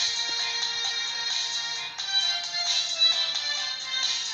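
Instrumental interlude of a song's backing track, without vocals: steady, high, bell-like synthesizer tones with little bass.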